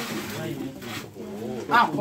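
A bird cooing, among people's voices, with a short spoken exclamation near the end.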